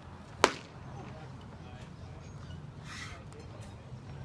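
A pitched baseball smacking into the catcher's leather mitt: one sharp pop about half a second in.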